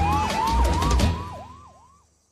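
Emergency-vehicle siren in a fast yelp of about three sweeps a second, with a second siren wailing upward alongside it. It plays over a musical beat that stops about a second in, and the sirens then fade away.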